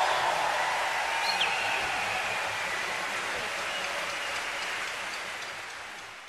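Concert audience applauding at the end of a performance, gradually fading out near the end.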